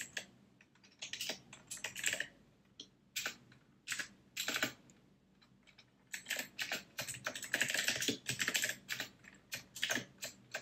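Computer keyboard typing in quick runs of keystrokes with short gaps, pausing briefly about five seconds in, then a longer, denser run of keys.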